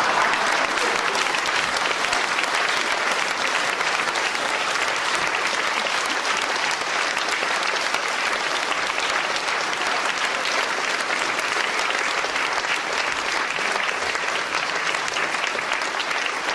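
Theatre audience applauding, dense steady clapping of many hands that keeps up at an even level throughout.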